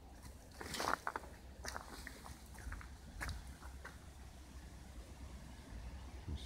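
Faint footsteps crunching and rustling through dry fallen leaves and undergrowth, with a few irregular crackles, loudest about a second in.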